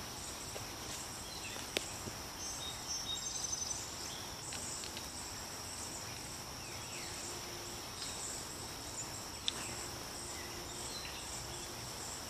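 A steady, high-pitched insect chorus in a summer field. Over it come faint rustling and two sharp clicks as a burlap tree wrap is handled and lifted off a stump.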